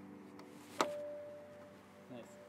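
A single sharp tap a little under a second in, followed by a short ringing tone that fades away.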